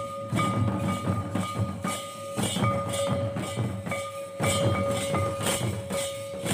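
Live folk dance music: drums beating a steady rhythm under a single high piping note that is held and broken off briefly every second or so.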